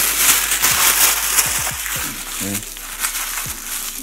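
Orange tissue paper being crumpled by hand into a tight ball: a dense, crackling rustle, loudest in the first two seconds and easing off as the ball gets smaller. A short voiced sound breaks in about two and a half seconds in.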